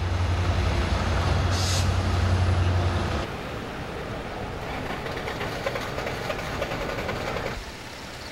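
Road traffic on flooded streets: a heavy vehicle's engine rumbles with a broad wash of noise for about the first three seconds. Then a quieter, steady wash of traffic and water noise follows and stops abruptly shortly before the end.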